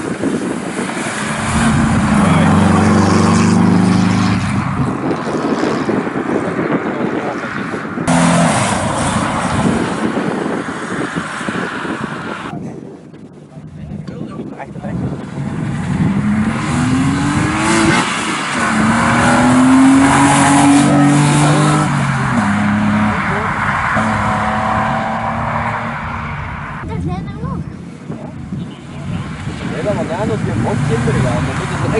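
Classic rally cars accelerating hard away on a tarmac stage, one car after another, with the engine note rising through the gears on each run. The sound breaks off abruptly a few times as the next car begins.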